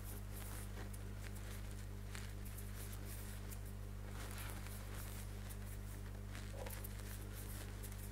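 Faint rustling and soft scattered clicks of a small crochet hook working cotton thread through single crochet stitches, over a steady low hum.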